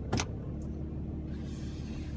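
Steady low hum inside a pickup truck's cab, with one sharp click just after the start.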